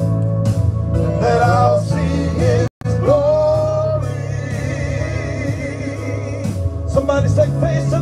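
Men singing a gospel worship song into microphones over amplified backing music, with a split-second dropout in the sound about three seconds in.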